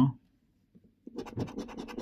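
A coin scraping the scratch-off coating from a scratchcard in quick, repeated strokes, starting about a second in after a short silence.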